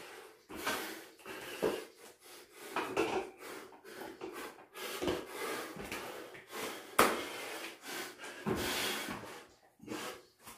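A man breathing hard between exercise reps, with irregular thumps and knocks from hands and bare feet hitting a floor mat and the pull-up bar during pull-ups and burpees. A sharp knock about seven seconds in is the loudest sound.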